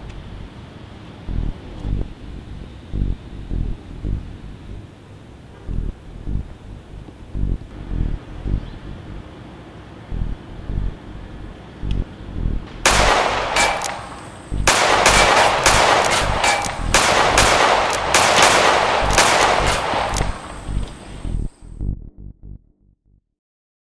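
A long volley of gunshots, many in quick succession, begins about two-thirds of the way in and runs for several seconds before cutting off abruptly. Before it, only a low, regular thudding is heard.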